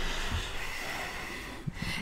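A person's breathy exhale close to the microphone, fading off slowly.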